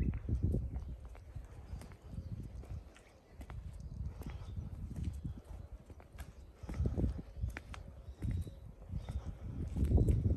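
Horse hooves clip-clopping irregularly on hard ground, over a low rumble that swells a few times.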